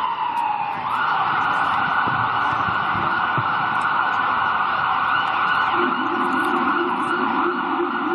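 Emergency vehicle siren sounding in the street: a falling wail, then about a second in it switches to a rapid yelp that holds steady. A lower tone joins near the end.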